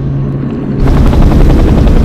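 Helicopter flying low, its rotor chop getting louder about a second in, over a steady low hum.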